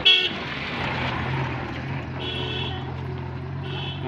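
Small van's horn tooting three short times, the first loudest, as the van passes close by, with its engine running in a steady low hum.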